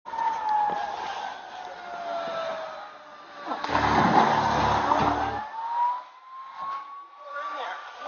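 Police siren wailing, its pitch sliding slowly down, then rising again and holding. A loud burst of rumbling noise covers it for about two seconds in the middle.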